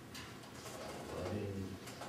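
A man's low voice speaking slowly in prayer, indistinct.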